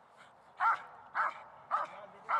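Dog barking three times, short barks about half a second apart.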